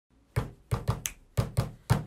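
A rhythmic beat of seven sharp knocks and thumps, unevenly spaced, some with a deeper thump and some with a sharper high snap.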